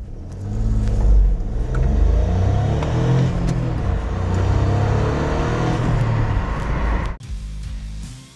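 Dacia Jogger's LPG-capable 1.0 three-cylinder turbo petrol engine pulling away and accelerating, its pitch rising and dropping back several times through the gear changes, then cut off suddenly near the end.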